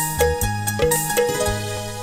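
Instrumental interlude of a live Odia jatra song: electronic keyboards playing a melody over held bass notes, with drums keeping a steady beat of about four strokes a second.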